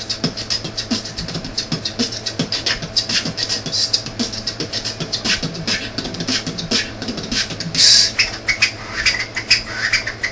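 A person beatboxing into the microphone: a fast, steady run of mouth-made kicks, clicks and hissing hi-hat sounds, with one longer loud hiss about eight seconds in.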